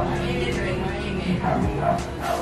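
A dog barking a few short times over background music.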